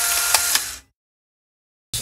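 Tail of a channel-intro sound effect: a high hiss with a click in it, fading out just under a second in, then a second of complete silence.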